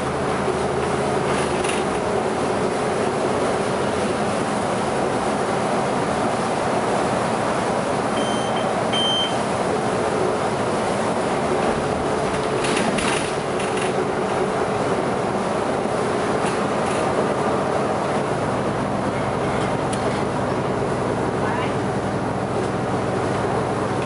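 A Sunwin city bus running, heard from inside the passenger cabin: steady engine and road noise with small rattles. Two short high electronic beeps come about eight seconds in, and the engine note deepens near the end.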